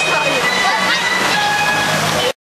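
Loud, steady rushing hiss of water around a river-rapids raft ride, with several long, held whistle-like tones and brief voices over it.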